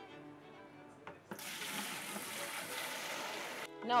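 Homemade sorrel wine poured from one plastic bucket into another, a splashing stream that starts suddenly about a second in and stops after a little over two seconds; the wine is being decanted off its yeast sediment. Faint background music with strings underneath.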